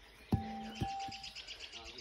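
A bird's fast trill: a rapid, even run of high notes, about a dozen a second, lasting about a second and a half. A short knock and a brief held vocal sound come just before it.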